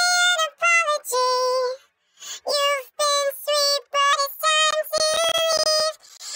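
A dry, unaccompanied woman's singing voice pitch-shifted up about an octave (+11 to +12 semitones) by a pitch-shifter plugin with formant following, giving a chipmunk-like sung line of short held notes with brief gaps. A cluster of sharp clicks cuts through near the end.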